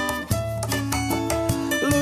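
Instrumental bar of an acoustic cover: acoustic guitars strummed and picked in a steady rhythm, with sharp percussive strokes on the beat, between sung lines.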